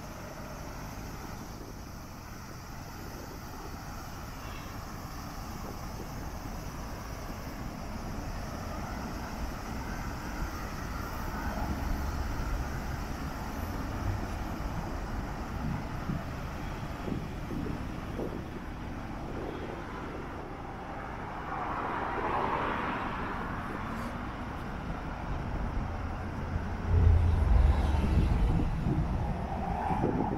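Street traffic: cars driving along a two-lane road, with a vehicle swelling past about two-thirds of the way in. A low rumble near the end is the loudest part.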